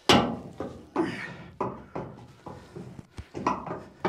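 Metal clunks and knocks from the rudder stock and its bolt flange, shifted by hand against the steel hull to line up the mounting pins. About one or two knocks a second, each dying away quickly, the first the loudest.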